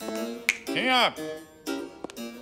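A cartoon finger snap about half a second in, over background music of plucked notes, followed by a pitched tone that swoops up and back down.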